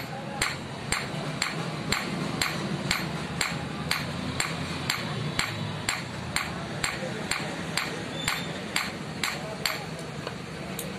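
Hand hammer striking a curved steel knife blade on an anvil in steady blows, about two a second, as the blade is forged.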